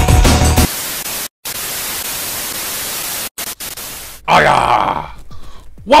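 Electronic intro music cuts off under a second in, giving way to a steady hiss of television static that drops out briefly twice. Near the end a short voice-like sound with a falling pitch comes in.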